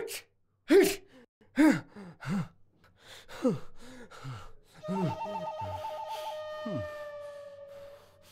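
A man's short grunts and gasps, each falling in pitch, coming roughly once a second. About five seconds in, a high warbling tone starts, then holds as a steady tone almost to the end.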